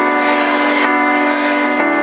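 Digital keyboard playing slow sustained chords, held steady with a change of chord near the end, in a live soul ballad arrangement.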